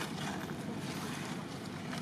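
Steady outdoor background noise, an even rushing hiss with no distinct sound standing out.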